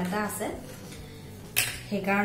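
A single sharp clink of kitchenware, a dish or utensil knocked or set down, about one and a half seconds in.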